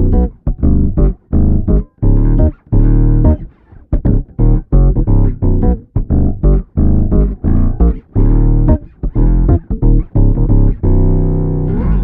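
Electric bass played through a Boss OC-5 octave pedal in its poly mode, which lets it track chords: a run of short, choppy notes with added octaves, ending on a held note near the end.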